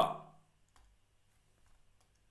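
The last syllable of a man's spoken word fades out in the first half second, followed by near quiet with a few faint, scattered clicks.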